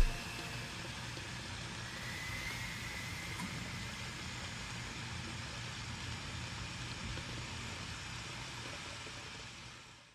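Faint steady background noise with a low hum, fading out near the end.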